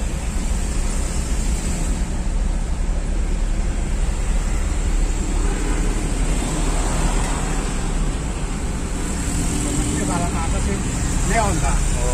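Steady low engine and road rumble heard from inside a vehicle cab moving through city traffic, with faint voices in the background.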